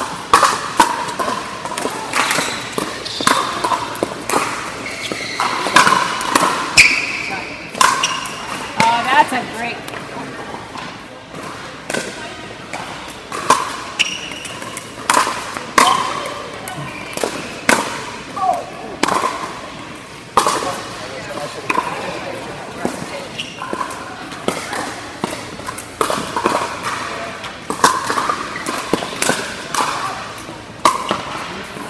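Pickleball paddles hitting a plastic pickleball during rallies: a run of sharp, irregular pops, some well under a second apart, with the ball bouncing on the court. There is a constant murmur of voices in a large indoor hall.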